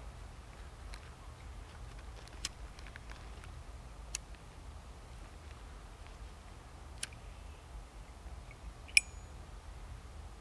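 Quiet outdoor background with a steady low rumble, a few faint clicks, and one sharper click about nine seconds in.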